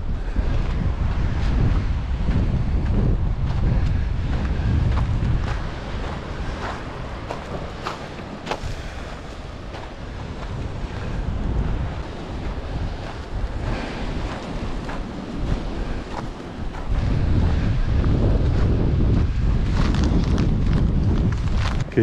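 Wind buffeting the microphone in gusts, strongest at the start and again near the end, over the wash of sea surf on the rocks below.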